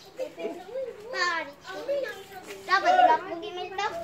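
Children's high-pitched voices talking and calling out, loudest about three seconds in.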